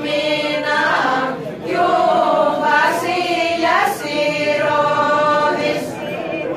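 A group of voices, mostly women, singing a Thracian Christmas carol (kalanda) in long held phrases with short breaks between them.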